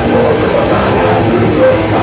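Grindcore band playing live: distorted electric guitar and drum kit, loud and steady.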